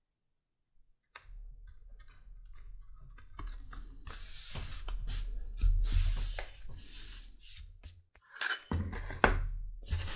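Hands pressing and rubbing two contact-cemented layers of leather together on a stone slab: skin sliding over the leather in hissy strokes with small clicks and taps, then two sharp knocks near the end as the piece is moved.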